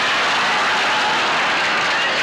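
Studio audience laughing and applauding in one steady, loud wash of crowd noise.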